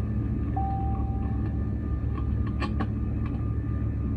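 Airbus A320 cabin noise in flight: a steady low engine and airflow rumble with a faint steady whine above it. A short steady tone sounds about half a second in and lasts about a second, and a few faint clicks come near the end.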